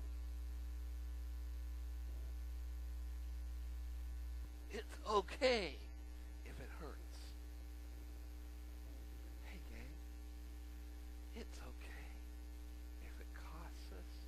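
Steady electrical mains hum on the recording, dropping a little in level about four and a half seconds in. A brief voice sound comes just after the drop, with faint voice traces later.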